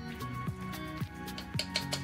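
Background music with a steady beat, about two drum hits a second under held notes.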